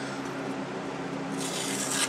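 The small blade of a Victorinox Classic Swiss Army knife slicing into a sheet of paper, a brief hissing cut about a second and a half in, testing the edge just raised on the Gatco Tri-Seps: the blade cuts. A box fan hums steadily underneath.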